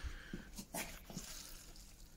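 Faint creaks and soft knocks of a metal briquette press being loaded down, squeezing water out of a wet sawdust and coffee-grounds mix.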